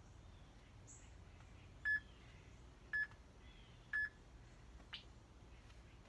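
Three short electronic beeps one second apart, all on the same high pitch: an interval timer counting down the end of a work interval. Faint bird chirps in the background.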